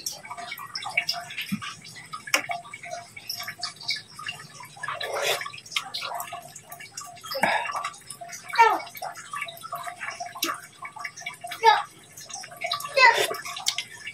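A pot of sinigang boiling hard, with irregular bubbling and gurgling. A metal spoon stirs it and clinks against the stainless steel pot now and then.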